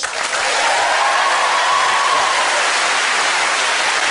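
Studio audience applauding a panellist's introduction, the clapping steady and even.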